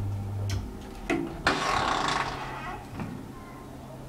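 Traction elevator's steady running hum cuts off about a second in as the car stops, followed by a few sharp clicks and a rushing slide about a second long, typical of the car doors opening.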